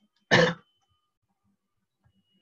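A single short, loud cough from a person close to a headset microphone, about a third of a second in.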